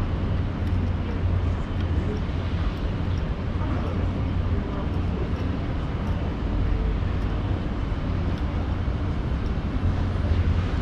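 Street ambience beside a busy avenue: a steady low rumble of road traffic.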